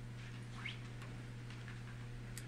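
Quiet room tone in a meeting hall: a steady low electrical hum, with a few faint scattered ticks and one short rising squeak about a third of the way in.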